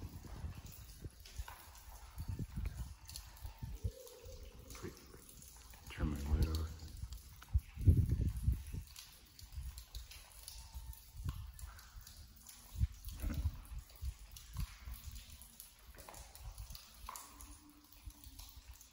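Bicycle riding through a long tunnel: irregular low knocking and rumbling from the tyres and frame on the trail surface. A brief indistinct voice sound, like a hum or laugh, comes about six seconds in, and the loudest thump just before eight seconds.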